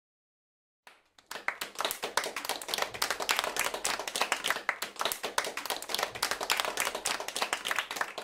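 Hands clapping: a quick, irregular run of sharp claps that starts about a second in after silence and keeps on steadily.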